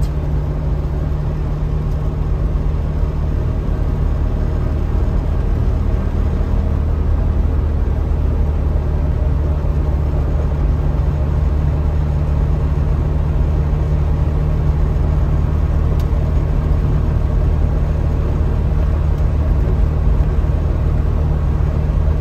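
Trabant 601's air-cooled two-stroke twin-cylinder engine running steadily while the car cruises, heard from inside the cabin.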